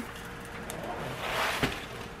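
Crisped rice cereal poured from a box into a pot of melted marshmallow: a soft rustling patter of the grains, swelling about one and a half seconds in.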